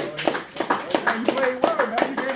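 Several people clapping, irregular claps a few times a second, with men's voices calling out over them.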